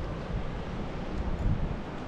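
Wind buffeting the microphone, over the steady wash of the sea against the rocky shore.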